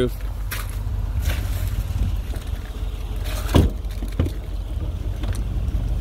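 Clicks and knocks of an SUV's doors and interior being handled as the front and rear doors are opened, with one louder thump about three and a half seconds in, over a steady low rumble.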